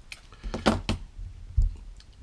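Hands and small tools being handled at a fly-tying vice: a quick cluster of sharp clicks and knocks between about half a second and a second in, then a single dull knock near the end.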